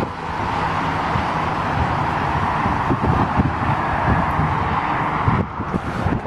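Steady wind noise on the microphone outdoors: a continuous hiss with an uneven low rumble, dipping briefly near the end.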